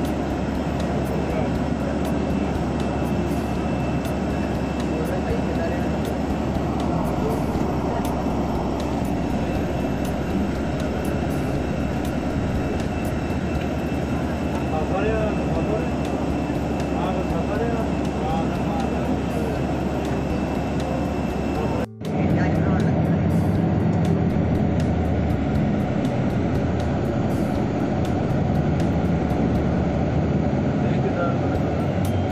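Steady, loud aircraft and ground-equipment noise on an airport apron, with a thin high whine over it. About three-quarters of the way through it cuts abruptly to a lower, humming engine sound.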